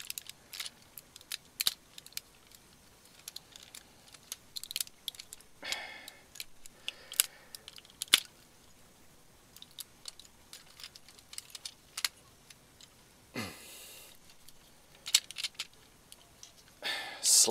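Hard plastic parts of a Transformers combiner figure clicking and knocking together as one limb robot is pulled off and another is fitted into its port: many irregular sharp clicks, with a few short soft rustles of handling in between.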